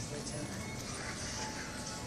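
Store ambience: background music playing with indistinct voices, and footsteps on a hard floor.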